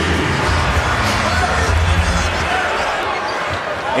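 Basketball arena crowd noise with music over the arena's PA; the music's deep bass stops about two and a half seconds in.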